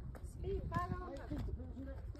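People's voices talking, not close to the microphone, over a steady low rumble.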